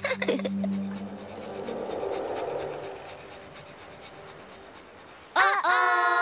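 Soft soundtrack music of a children's TV show, with a low held note, fades quieter. About five seconds in, a loud, high held chord breaks in.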